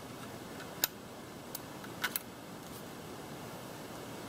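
Light clicks of small plastic parts being handled as plastic bushings are taken out of a quadcopter's motor mount: one sharp click about a second in and a close pair about two seconds in, over a steady background hiss.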